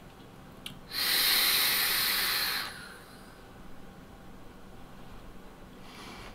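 A faint click, then a person's long, forceful breath of about two seconds, taken during a large vape hit.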